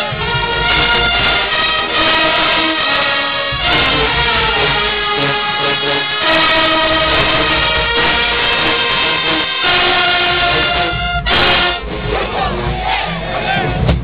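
College marching band's brass section playing loud held chords that shift every second or two. There is a short crash about eleven seconds in, after which the playing becomes ragged.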